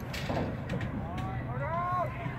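Players and spectators shouting and calling across an outdoor lacrosse field, with a few sharp clacks and a steady low rumble underneath.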